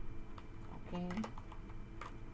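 A deck of tarot cards being shuffled by hand: scattered small clicks and flicks as the card edges slap together.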